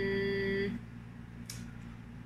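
A woman's long, steady hummed 'mm', held on one pitch, ending under a second in; then a quiet room with one faint click.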